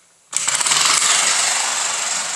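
A toy air-engine car's small piston motor running on compressed air pumped into its bottle tank with 20 strokes. It starts suddenly about a third of a second in and keeps going as a loud, fast, even rattle while the car drives off. The motor is working properly.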